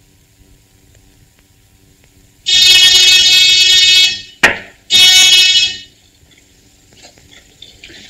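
An electric buzzer sounds twice, a long buzz of about a second and a half, then a shorter one of about a second, with a sharp click between them: the signal from the hidden entrance that a visitor has arrived.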